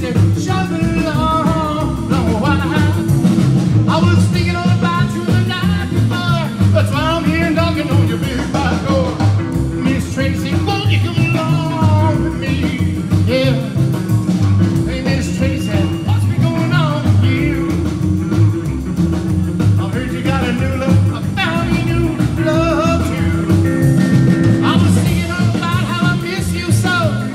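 Live rockabilly band playing: upright bass, acoustic rhythm guitar, electric lead guitar and a drum kit, with a man singing lead.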